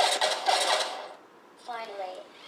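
A loud, harsh battle sound effect lasting about a second, starting suddenly and fading out, played through the NAO humanoid robot's built-in speaker as it acts out a fight. A short voice follows near the end.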